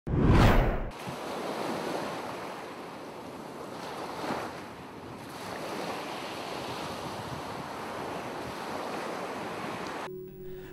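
Ocean surf: a loud rush of water in the first second, then a steady wash of waves that swells a little about four seconds in.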